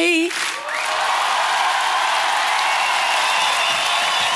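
A live audience applauding steadily at the end of a song, the singer's last held note cutting off just after the start, with a few whoops near the end.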